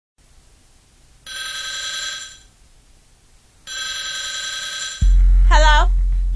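A telephone rings twice, each ring about a second long with a short gap between. About five seconds in, a loud, deep hip-hop bass beat comes in with a brief wavering vocal.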